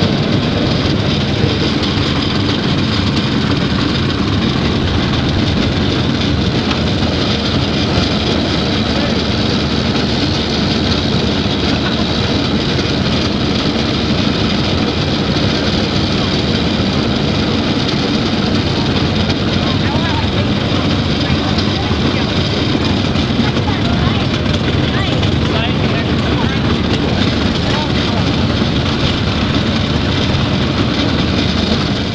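A large John Deere four-wheel-drive tractor's diesel engine running steadily as it tows a wagon, heard from the wagon just behind it, with wind on the microphone.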